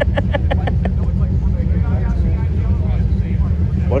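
Classic custom car's engine rumbling steadily at low speed as the car rolls past, a deep, continuous low exhaust note.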